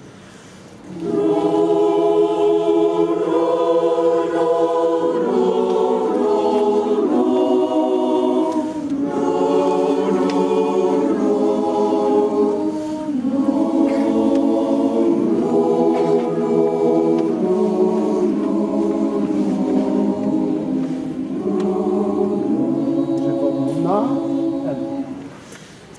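A choir singing held chords in phrases a few seconds long, with short breaks between phrases. The singing starts about a second in, after a brief pause.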